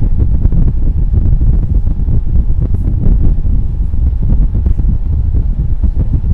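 Loud, uneven low rumble of air buffeting the microphone.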